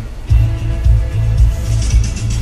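Music playing from the pickup's factory Sony stereo, just switched to the radio, with heavy bass under steady held tones.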